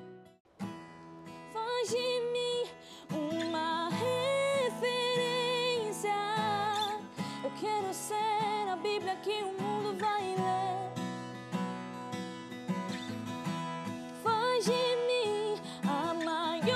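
A woman singing a slow gospel song, accompanying herself on acoustic guitar. The song comes in about a second and a half in, after a short lull.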